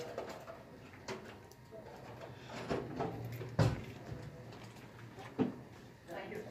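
Light knocks and clicks of dental instruments and an impression tray being handled at the chair, a few scattered strokes, the loudest about three and a half seconds in.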